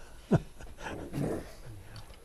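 A man laughing: a short chuckle falling in pitch about a third of a second in, followed by quieter, softer laughter.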